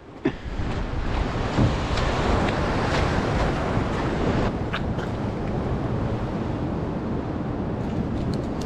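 Ocean surf washing steadily against the rock platform, mixed with wind on the microphone, with a couple of light clicks about halfway through.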